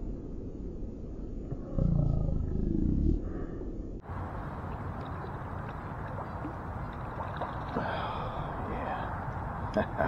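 A small crappie being reeled in on a light spinning rod. A low rumble of wind or handling on the microphone comes about two seconds in, then steady outdoor noise with faint splashing as the fish thrashes at the surface. A few sharp clicks come near the end.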